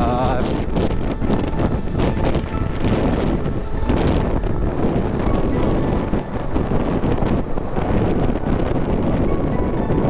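Heavy wind buffeting on the microphone of a helmet camera on a moving motorcycle, a loud steady rush with the bike's running and road noise underneath.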